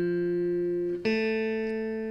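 Yamaha electric guitar strings plucked and left to ring during tuning to drop C. The G string, tuned down to F, rings first; about a second in, the B string, tuned down to A, is plucked and rings steadily.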